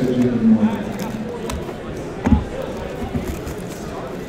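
A man's voice briefly at the start, then a single dull thump about two seconds in as a small cardboard box of trading cards is set down on the table, with light handling clicks around it.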